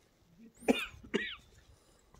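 A person coughing twice in quick succession, two short sharp coughs about half a second apart.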